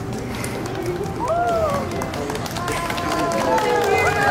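Outdoor street background with people's voices: high-pitched voices calling out from about a second in, over a steady low hum of the surroundings.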